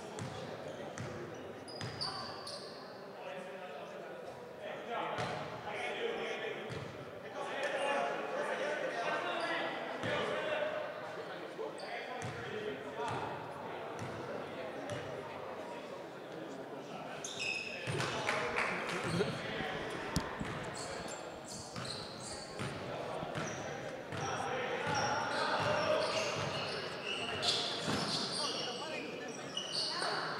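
Basketball bouncing on a hardwood gym floor, many separate bounces, with players' and spectators' voices in the background of a large gym.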